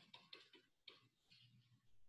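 Faint scratching of a pen writing on paper: a quick run of short strokes as a word is written out by hand.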